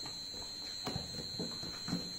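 A picture book's cover being swung open and laid flat on a wooden table: a few soft knocks and paper rustles, over a steady high-pitched whine.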